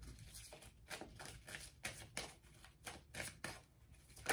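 Faint, quick run of soft, irregular clicks and riffles from a deck of tarot cards being shuffled by hand.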